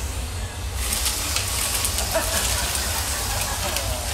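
Vacuum cleaner running with its hose on the floor, a steady hum and hiss, while it picks up shattered glass from the fireplace door; scattered sharp ticks come through from about a second in.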